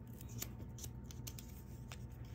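Paper and cardstock pages and pockets of a small handmade junk journal being handled and flipped: a run of faint, crisp paper ticks and rustles, several in two seconds.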